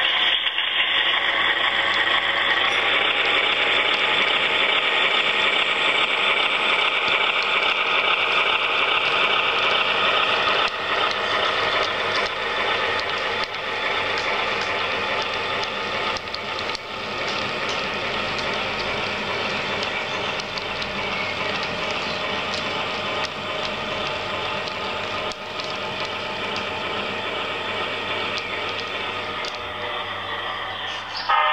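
HO scale model train running past: the diesel locomotive's motor and gear drive whirring and the wheels running over the rails, with a steady mechanical rattle. It is loudest for the first ten seconds or so, then slowly fades as the train moves away.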